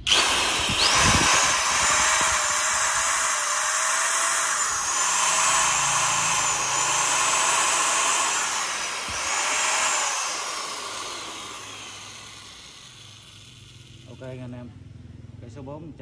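Aluminium-bodied 100 V, 390 W corded electric drill switched on and run free at full speed, its motor whining. The pitch dips briefly twice, then the trigger is let go about ten seconds in and the motor winds down over a few seconds with a falling whine.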